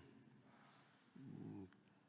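Near silence, broken a little past halfway by one faint, short hum from a man's voice.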